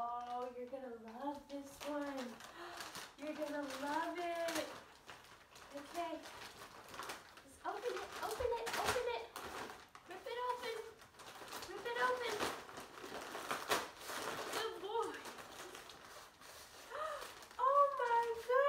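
Australian shepherd whining and yowling excitedly, a run of high calls that slide up and down in pitch, while wrapping paper crinkles and tears as the dog gets into a present.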